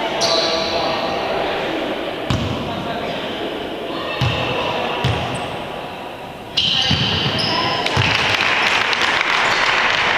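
A basketball bounced a few times on an indoor court floor, each bounce a separate thud, over hall chatter. A little past halfway the noise rises suddenly into louder voices with short high squeaks as play resumes.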